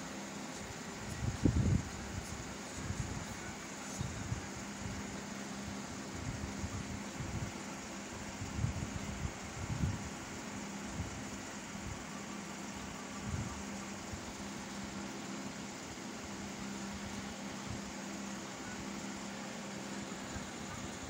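A steady hum with a faint hiss, like a fan running, broken by irregular low thumps of handling noise, the strongest about a second and a half in.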